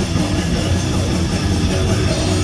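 Live metal band playing loud and continuously: distorted electric guitars, bass guitar and drum kit.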